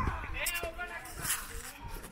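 People's voices talking quietly, the words indistinct.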